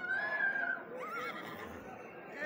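A horse whinnying: a long, high, held call in the first second, then a quavering, wavering tail.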